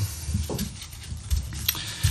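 Soft handling noises: light bumps and faint clicks as gloved hands take hold of a small LED lamp board clamped in a plastic holder on a table.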